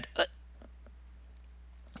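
A single brief mouth sound from the man, tagged as a hiccup, just after the start, then a pause in which only a faint steady low hum is left.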